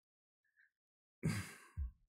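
Near silence, then a short sigh, a breathy exhale, about a second in, followed by a brief low sound near the end.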